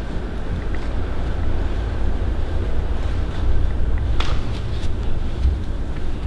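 Low, steady rumble of handling noise on a handheld camera's microphone as it is carried up a carpeted staircase, with a faint knock about four seconds in.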